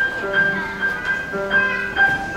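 Grand piano played four hands: a high note struck again and again about twice a second over held lower notes, in a gentle steady rhythm.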